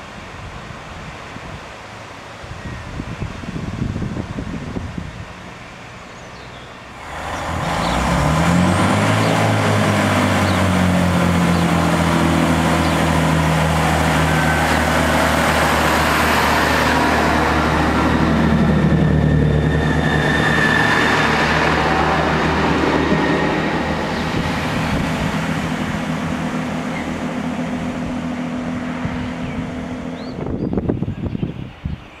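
A diesel multiple unit's engines: after a cut about seven seconds in, a Chiltern Class 165 Turbo's diesel engines rev up with a rising pitch, then run steadily and loudly, rising in pitch once more a little past halfway. Before the cut there is quieter train noise from an approaching Class 121 railcar.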